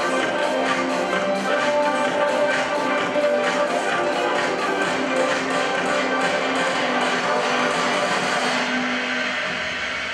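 Instrumental backing track of a pop song playing with a steady beat, before the vocal comes in.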